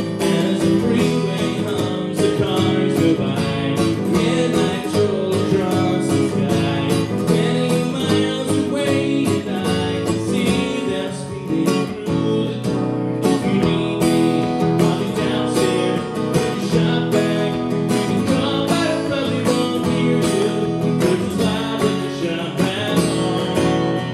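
Acoustic guitar strummed steadily in a brisk rhythm, a solo live song passage without words.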